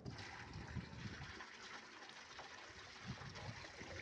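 Water being poured from a bucket into a round livestock water tub: a faint, steady trickle.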